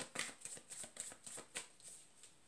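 A tarot deck being shuffled by hand: a quick run of soft card slaps and riffles, about six a second, tailing off near the end.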